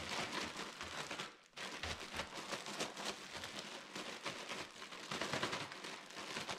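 Chocolate-and-peanut-butter-coated Rice Chex rattling and tumbling in powdered sugar inside a plastic zip-top bag as it is shaken, with the bag crinkling. This is the step that coats the cereal in sugar. The sound breaks off briefly about a second and a half in, then the shaking goes on.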